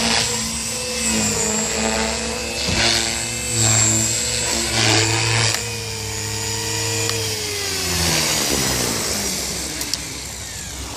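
JR Forza 450 electric RC helicopter's motor and rotor whining, swelling louder a few times under throttle. In the second half the whine falls steadily in pitch and fades as the helicopter is brought down and its rotor winds down after landing.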